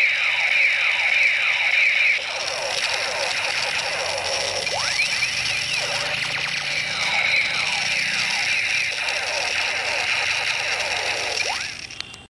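Electronic toy gun's sound effects: a continuous stream of overlapping sweeping zaps that glide up and down in pitch. It gets a little quieter about two seconds in and stops at the very end.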